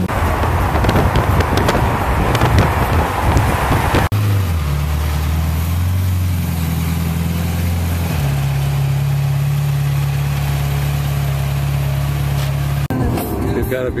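Ferrari V8 engine: first the open-top car driving, with wind rushing over the microphone, then the parked car's engine idling with a steady low note that dips as it settles and steps up in pitch about eight seconds in.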